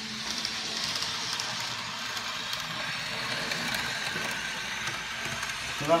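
N gauge model trains running on the layout: a steady, even whirring hiss of small motors and wheels on the track, with faint irregular clicks.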